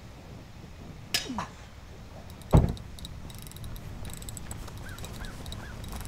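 A single heavy thump about two and a half seconds in, over a steady low outdoor background, with a few faint short chirps near the end.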